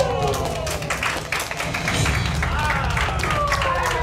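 A small group clapping, with several long falling pitched calls, over background music.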